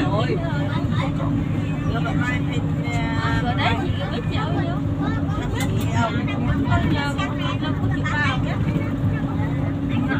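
Steady low engine drone and road noise heard inside a moving vehicle's cabin, with passengers' voices chatting on and off.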